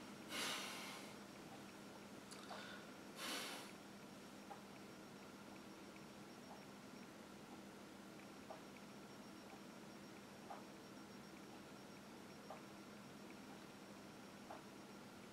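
Near silence in a small room: two short, noisy breaths from a man, one about half a second in and another about three seconds in, after which only faint ticks about every two seconds sound over a steady low hum.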